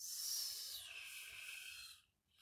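A person's long hissing breath out, falling in pitch over the first second, that starts and stops abruptly.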